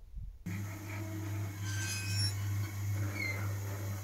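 The drive motor of a Fröling T4e boiler's turbulator cleaning mechanism hums steadily, starting about half a second in, as the moving frame is slowly raised before it drops to shake the ash off the turbulators.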